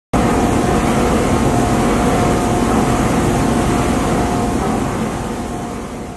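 Wire-recycling line running, with its blowers pushing air and material through cyclone separators: a loud, steady rush of machine noise with a thin high whine, fading out near the end.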